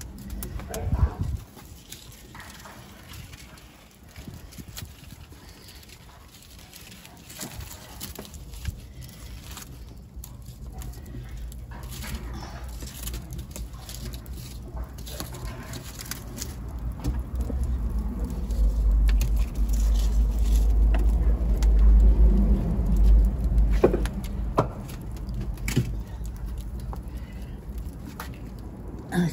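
Wood fire crackling under an earthenware cooking pot in a brick hearth, with scattered small clicks and a couple of sharper knocks. A low rumble swells through the second half.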